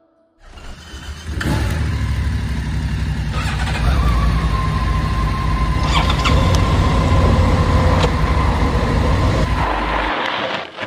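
Motorcycle on the move: engine running with wind rushing over the microphone. The sound starts suddenly about half a second in, with a faint steady whistle from about four seconds.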